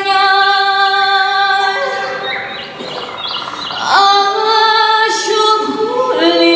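A woman singing long, held notes into a stage microphone. In the middle her voice drops quieter for a moment, then slides up into another sustained note.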